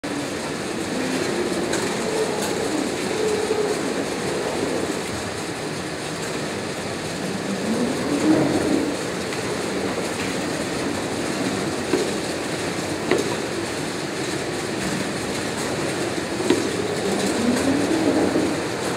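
Roach Gator Singulator powered roller conveyor running, its steel rollers rattling steadily as cardboard boxes travel over them, with a few sharp knocks along the way.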